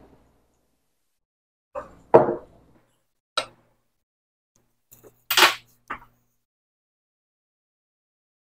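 A metal spoon clinking and knocking against a ceramic mug as creamer is stirred in: a handful of short, separate strikes spread over several seconds.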